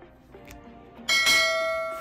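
A single bell-chime sound effect, struck about a second in and ringing on with several clear tones as it fades: the notification-bell ding of a YouTube subscribe-button animation.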